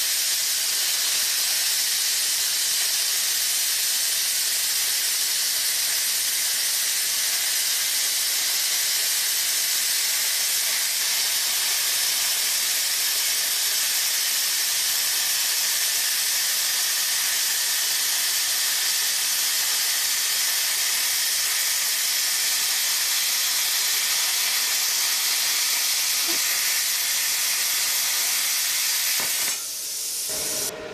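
Flameweld 50-amp air plasma cutter cutting through 4 mm steel plate at 35 amps on 110 volts: a steady, even hiss of the plasma arc and air jet that cuts off just before the end.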